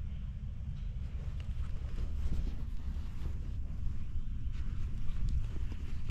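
Wind on the microphone, a steady low rumble, with a few faint clicks and rustles from handling.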